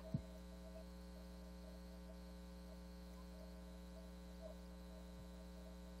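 Faint, steady electrical mains hum, several even tones held without change, with nothing else to be heard.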